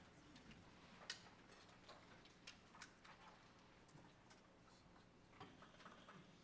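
Near silence: quiet hall room tone with a low hum and a few faint, scattered clicks, the most distinct about a second in.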